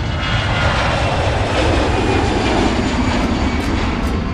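Airplane flyover sound effect: a loud engine rush whose pitch falls over the second half as the plane passes.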